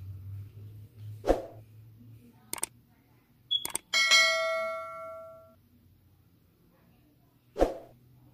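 Subscribe-button sound effects: a soft pop, then a few quick mouse clicks, then a bell ding that rings out for about a second and a half. Another pop comes near the end.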